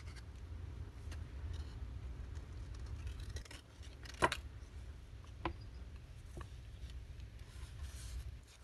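Scissors trimming a small piece of paper, with light handling and rustling. A sharp snip about four seconds in is the loudest sound, and a couple of lighter clicks follow. A low steady hum runs underneath.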